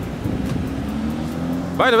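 Audi R8's V10 engine running at low revs as the car turns through a junction, its low note rising slightly as it pulls away.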